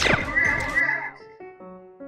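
A laser-gun zap sound effect, a steep falling sweep in pitch, trailing into a brief wavering high tone that cuts off just under a second in. About a second in, soft piano-like background music starts, a few held notes.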